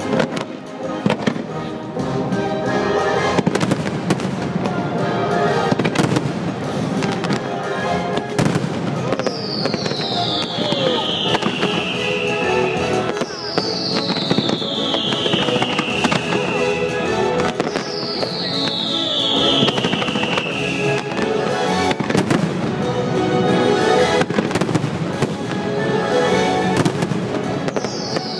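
Aerial fireworks bursting in quick, irregular cracks and booms over loud show music. From about a third of the way in, a high whistle falling in pitch over a few seconds repeats about every four seconds.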